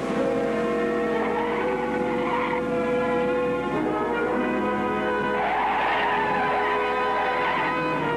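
Dramatic orchestral underscore of sustained brass-like chords that change several times, with two rushing swells, about two and about six seconds in.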